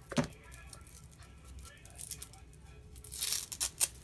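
Small plastic ink pad cases being handled on a craft table: a sharp click just after the start, then a brief scuffing rub and two sharp clicks near the end.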